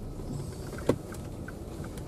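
Car cabin sound as the car moves off: a steady low engine and road rumble, a single sharp click just before a second in, and a string of faint short beeps about three a second.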